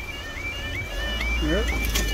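Level crossing warning alarm sounding: a two-tone warble of short rising tones repeating about three times a second. A low rumble comes up under it about a second in.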